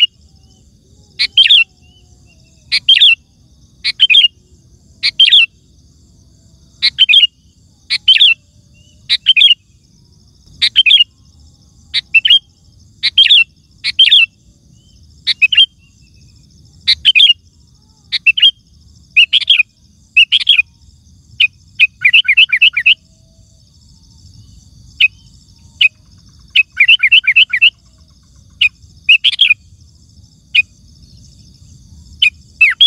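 Sooty-headed bulbul singing: short, loud phrases of a few clear notes, repeated about once a second. Twice in the latter half it breaks into quicker runs of several notes.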